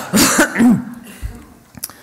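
A woman's short cough to clear her throat near the start, rough and loud, lasting about half a second.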